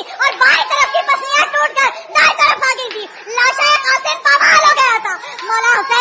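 A woman's high-pitched voice speaking without pause, with only brief breaks between phrases.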